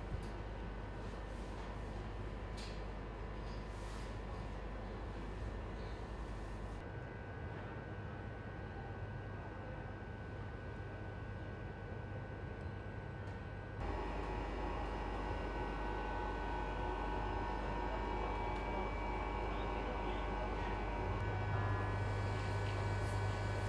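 Izmir Metro train running, a steady rumble with a low hum and several held tones; the sound shifts abruptly about seven seconds in and gets louder from about fourteen seconds in.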